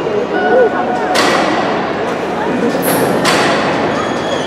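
Crowd of spectators chattering in a large hall, with a few sharp clicks about a second in and twice near three seconds.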